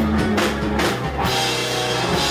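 Rock band playing live: electric and acoustic guitars over a drum kit, with a run of drum hits in the first second and cymbals ringing through the second half.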